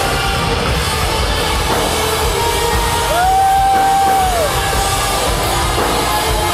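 Live rock band playing loud, with distorted electric guitars and a drum kit. About three seconds in, one high note slides up, holds for about a second and a half, and slides back down.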